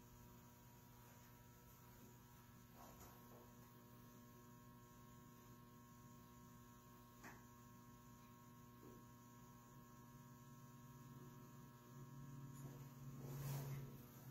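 Near silence with a steady electrical mains hum. In the last couple of seconds a louder low sound swells up.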